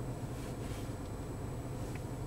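Steady low hum of the 2019 Toyota Corolla LE's 1.8-litre four-cylinder idling, heard inside the cabin, with a few faint taps.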